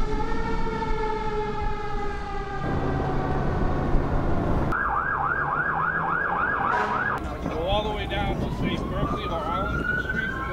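Emergency-vehicle sirens across several cuts: a fire engine's siren slowly falling in pitch for the first couple of seconds, then a fast yelp siren warbling for about two seconds, then a wail rising slowly near the end.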